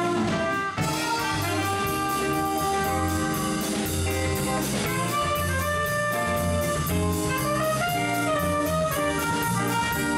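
Small jazz combo playing: a trumpet carries the melody over a walking bass and a drum kit keeping a steady cymbal beat.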